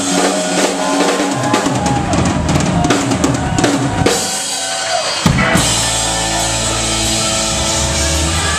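Live rock band in a breakdown: the bass drops out while the drum kit plays busy strikes, with sliding pitched notes over them. A little over five seconds in, the full band comes back in on a loud hit, bass and all.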